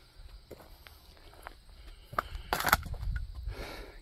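Footsteps, with a few scattered crunches and one louder crunch about two and a half seconds in, over a low rumble that grows in the second half.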